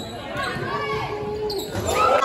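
Basketball bouncing on a hardwood gym court, with a heavier thud near the end, amid voices and shouts from players and spectators.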